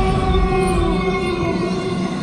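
Background music with long, held tones and no clear beat.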